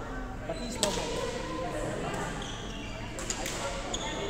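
Badminton rackets striking a shuttlecock in a rally: a sharp crack about a second in, and two more quick hits near the end, over chatter in the hall.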